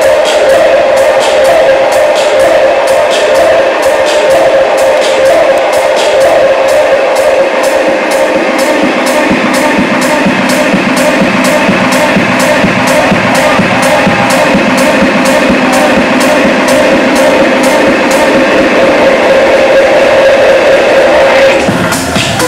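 Loud live techno: a sustained synth note held under a steady, evenly spaced percussion tick pattern.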